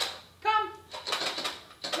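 A man calling a dog with one sharp "come!", followed by about a second of rapid light clicks.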